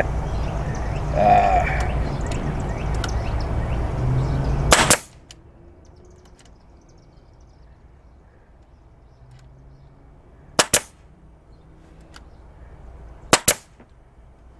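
Pneumatic nail gun firing nails into pallet wood: two sharp shots, each a quick double crack, about ten and thirteen seconds in. Before them a motor runs steadily and cuts off abruptly about five seconds in.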